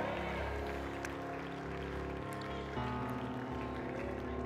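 Soft sustained keyboard chords, shifting to a new chord near the end.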